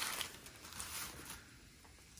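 Faint rustling and soft clicks from pizza slices being handled on their paper sheets, dying away to room quiet about halfway through.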